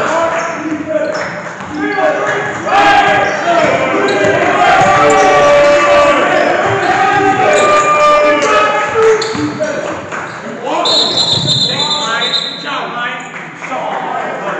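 A basketball dribbled and bouncing on a hardwood gym floor, under loud, untranscribed shouting and chatter from players and onlookers that echoes around the gym. A high, steady tone sounds for about two seconds near the end.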